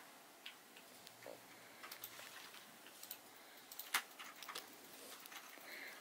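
Faint handling sounds of fingers working through a synthetic wig's hair and lace cap: soft rustling with scattered small, irregular ticks, the sharpest about four seconds in.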